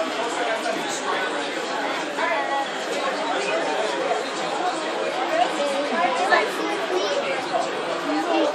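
Indistinct chatter of several people talking at once, voices overlapping at a steady level with no single clear speaker.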